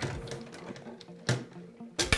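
Light clicks and knocks from a circuit board with metal heatsinks being handled against a perforated metal chassis, with one louder knock a little over a second in.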